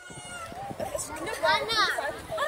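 Children and women chattering at play, with one high-pitched voice calling out near the end.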